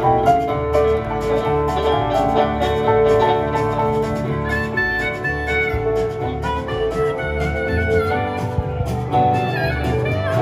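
Live country band playing an instrumental passage with no singing: acoustic and electric guitars carry melodic lines over a steady bass and drum rhythm.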